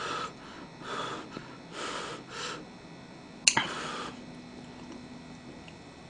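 A person eating close to the microphone: chewing and breathing noises in a few short soft bursts, with a sharp click about three and a half seconds in.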